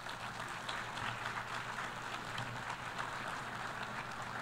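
Audience of delegates applauding in a large assembly hall: a steady, even patter of many hands clapping, fairly quiet on the podium microphones.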